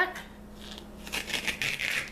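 A strip of duck tape being peeled up off a cutting mat: a rough, crackling rip in uneven bursts that grows louder toward the end.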